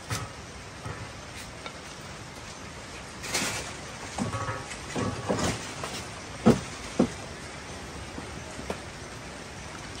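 Handling noise from an electric rice cooker and its plastic rice paddle: a few scattered clicks and knocks, the two sharpest about half a second apart around two-thirds of the way through, over a steady low hiss.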